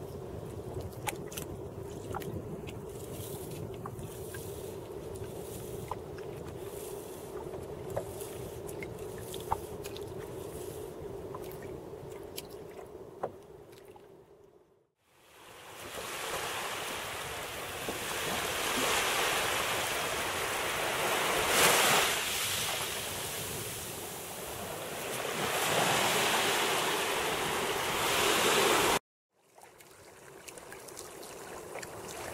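Open sea and wind around a wooden dugout canoe, with a steady low hum and scattered light clicks. After a brief drop to silence, louder surf and wind wash in slow swells, then cut off suddenly.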